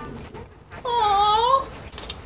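A woman's drawn-out, high-pitched exclamation of delight, an "ooh" whose pitch dips and then rises, lasting under a second and starting just under a second in.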